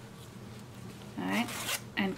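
A zipper sewn to a fabric pouch piece being handled, with a short rasp of the zipper a little past halfway through.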